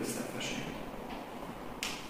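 A person speaking quietly, the hissing 's' sounds standing out as three short sharp strokes.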